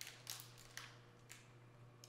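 A few faint crinkles of a clear plastic sterile pouch being handled with gloved hands, mostly in the first second.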